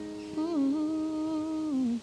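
A woman's voice holding one long wordless note over ringing acoustic guitar notes. The note bends up slightly as it starts and falls away near the end.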